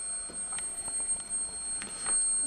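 Steady high-pitched squeal from the transformer and coils of a TL494-driven oscillator circuit running near its coils' resonance, with a fainter tone an octave above.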